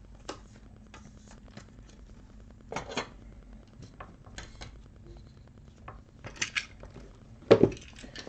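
Light clicks and taps of trading cards and clear plastic card holders being handled and set down on a table, with a louder knock near the end.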